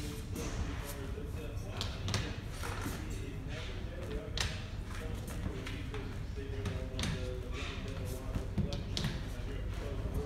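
Magnetic bars being snapped onto the metal frame of a pop-up display counter: a scattered series of sharp clicks as each bar attaches.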